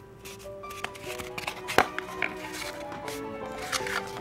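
Soft background music of held notes that change pitch every half-second or so, with one brief sharp click a little under two seconds in.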